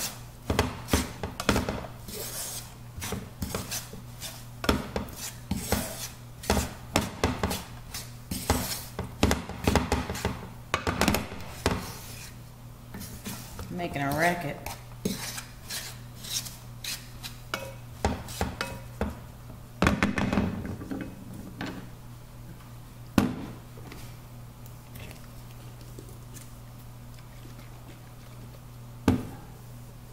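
Wooden spatula stirring and scraping raisins and melting butter around a nonstick frying pan, with quick clicks and scrapes. These come thickly for the first dozen seconds, then as sparser taps over a steady low hum.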